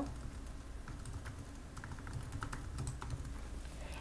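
Typing on a computer keyboard: a quick, irregular run of light key clicks as a web address is typed in.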